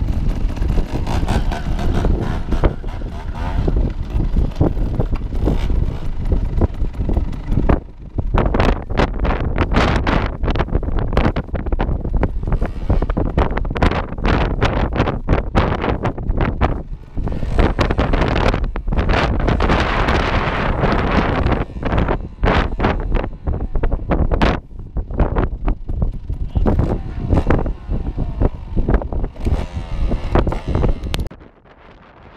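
Wind buffeting the microphone in irregular gusts, over the running of trials motorcycle engines.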